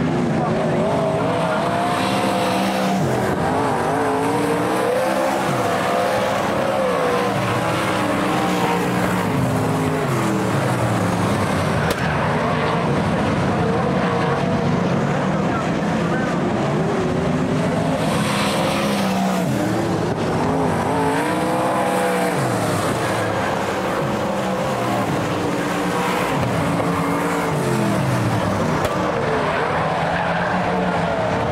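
Engines of several winged Modified speedway race cars running hard in a pack, the pitch rising and falling again and again as the cars accelerate down the straights and lift into the turns.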